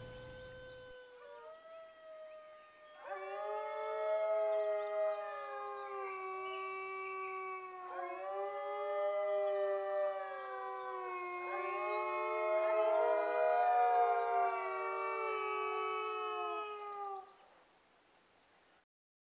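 Alphorn playing a slow melody of long held notes that step between pitches. It starts faintly, grows louder about three seconds in, and stops shortly before the end.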